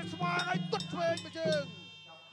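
Traditional Kun Khmer ring music: a wavering reed melody over a steady low drone, with small metal hand cymbals striking in a regular beat. A commentator's voice runs under it.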